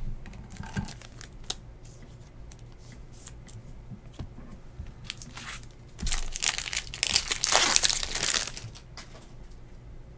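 A trading-card pack's wrapper being torn open by hand, a loud crinkling tear lasting about two and a half seconds in the second half. Before it come a few light ticks of cards being handled.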